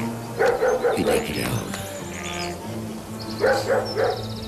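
A dog barking in two short runs of several barks, about a second in and again near the end, over soft background music.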